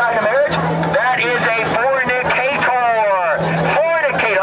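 A man's voice shouted through a handheld microphone and portable loudspeaker, loud and continuous, with a steady low hum under it.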